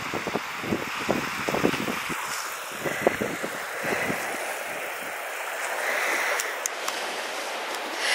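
Wind buffeting the microphone in low gusts over a steady hiss of sea surf washing on the shore, with the surf swelling now and then.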